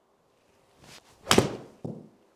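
A golf shot hit with a pitching wedge into an indoor simulator screen. A soft swish of the downswing is followed, a little past halfway, by one loud, sharp smack of clubface on ball and ball into the screen, with a short ring-out. A fainter knock follows near the end.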